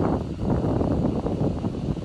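Wind buffeting the microphone: a loud, uneven rumble that rises and falls in gusts.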